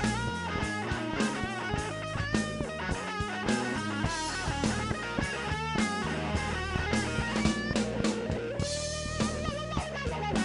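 Live blues-rock band: a Fender Stratocaster electric guitar playing a lead solo, its notes bent and wavering in pitch, over bass guitar and drum kit.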